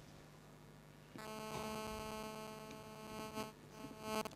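Electrical buzz on the microphone line: after a second of near silence, a steady buzz with many overtones starts suddenly, holds, and cuts off shortly before the end.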